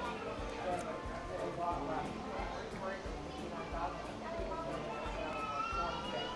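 Indistinct background voices of other diners, with no clear words.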